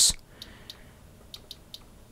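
Quiet room tone with a few faint, short clicks scattered through it, from control knobs on bench test equipment being turned.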